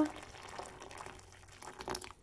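Boiling water being poured into a glass measuring jug holding tea bags and honey, a faint steady pouring sound.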